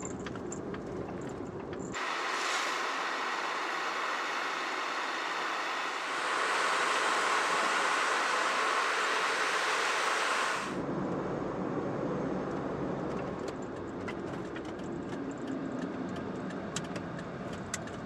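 A kei van driving, its road and engine noise a steady low rumble. For a stretch in the middle, from about two to ten and a half seconds in, this gives way to a steady high hiss with no rumble under it.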